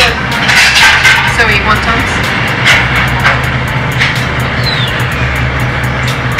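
Noodle-shop din: indistinct voices and the sharp clicks of dishes and utensils over a steady low hum, with music underneath.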